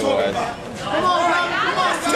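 Several people talking and calling out at once, their voices overlapping in a large hall.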